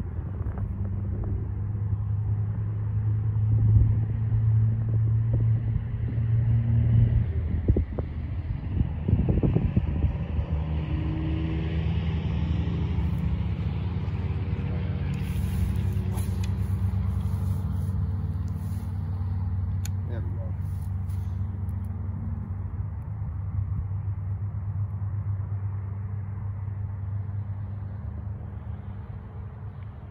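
A steady low engine drone with a pitch shift about seven seconds in, fading slightly toward the end.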